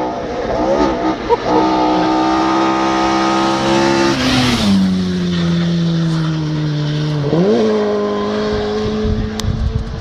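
Rally car engine on a gravel forest stage, its note holding steady, then dropping about halfway through and rising sharply again a couple of seconds later.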